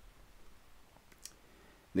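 A small USB-C adapter picked up and handled on a wooden tabletop: a faint click a little over a second in, with a few softer ticks around it, over quiet room tone.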